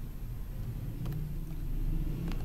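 Steady low background rumble, with a couple of faint mouse clicks about a second in.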